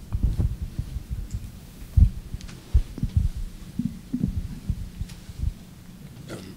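Irregular low thumps and knocks of a handheld microphone being handled, with the strongest thump about two seconds in, over a steady low hum from the sound system.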